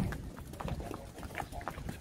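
Cattle hooves on wet brick paving: irregular knocks as the cows walk.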